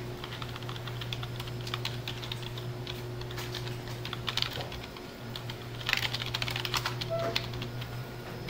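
Typing on a computer keyboard: a run of quick, irregular key clicks with a denser flurry about six seconds in, over a steady low electrical hum.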